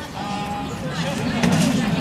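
Outdoor background of people's voices, murmuring with no clear close-up speech.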